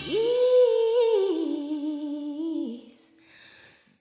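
A woman's solo voice, unaccompanied, sings a held wordless note that steps down in a slow run. It stops about two and a half seconds in, leaving a faint breath.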